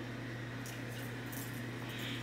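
Quiet room tone: a steady low hum under a faint even hiss, with no distinct sound events.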